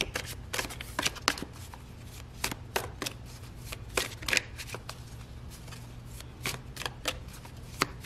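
A deck of tarot cards being shuffled by hand: irregular crisp snaps and clicks of the cards, coming in short flurries with pauses between.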